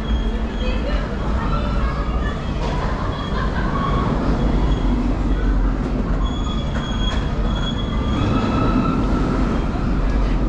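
Slow tunnel-of-love ride boats moving along their channel: a steady low rumble with short, thin high squeals now and then.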